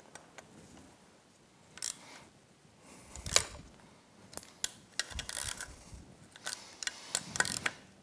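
Hand-tool work on an outboard's metal water pump housing as its bolts are set and run down: scattered small metal clicks and taps. A quick series of sharp clicks comes near the end, like a ratchet.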